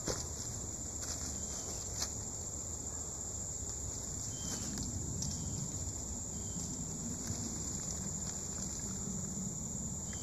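Steady high-pitched chorus of insects, with a low rumbling haze underneath. Two sharp clicks stand out, one at the very start and one about two seconds in.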